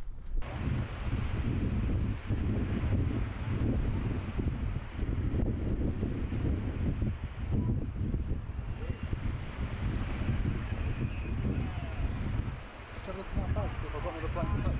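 Strong wind buffeting the microphone in gusts, a heavy low rumble over the wash of choppy sea, with a brief lull near the end.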